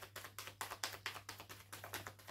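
A deck of tarot cards being shuffled by hand, the cards flicking against each other in quick, even taps about seven a second.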